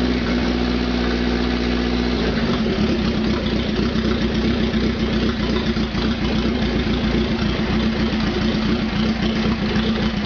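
1941 Indian Four's air-cooled inline four-cylinder engine idling steadily. About two seconds in, its even note breaks into a more uneven, pulsing beat.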